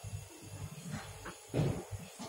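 Marker writing on a whiteboard: faint, irregular short strokes and taps, with a louder one about one and a half seconds in.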